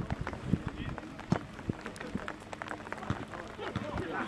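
Outdoor ambience at an amateur football pitch: scattered, irregular light taps and knocks over a low background, with faint distant voices.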